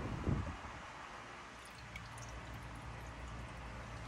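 Cleaning liquid poured from a plastic bottle into a shallow metal tray: a faint trickle and drips, with a low steady hum in the background.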